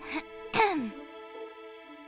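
A cartoon character's short startled vocal sound, two quick bursts with the second falling in pitch, over background music holding steady chords.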